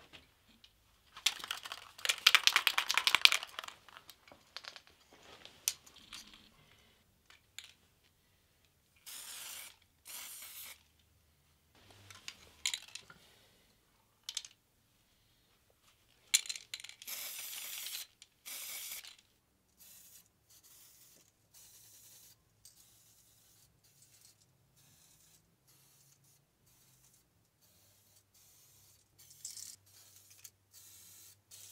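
Aerosol spray paint hissing in short separate bursts through a stencil, each under a second to about a second and a half, with gaps between. The loudest noise, about two seconds in, is a rougher rattling hiss.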